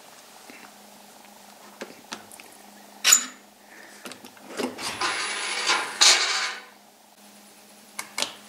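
Charging connector unlatched and pulled out of a plug-in hybrid's charge port: a sharp click about three seconds in, then about two seconds of plastic scraping and rustling as the plug comes out.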